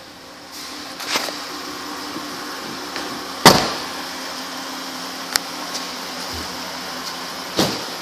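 A car's rear door is opened, letting in a steady workshop hum, and is shut with a loud thud about three and a half seconds in. Smaller knocks and a second thump near the end come from someone getting out and moving around the vehicle.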